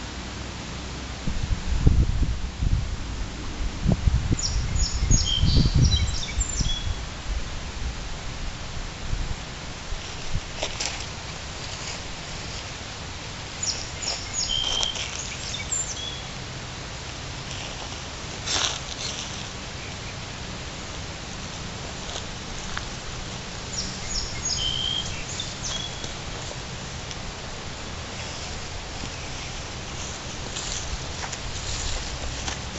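Outdoor ambience with a songbird singing a short phrase of high chirps three times, about every ten seconds. Low rumbling buffets come in the first few seconds.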